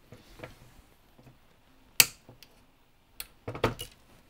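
Hand cutters snipping through the blaster's plastic shell: one sharp snap about two seconds in, then a smaller click and some brief handling noise near the end.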